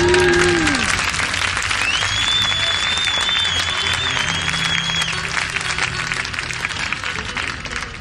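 Concert audience applauding and cheering, with a high held whistle from about two seconds in to about five seconds in.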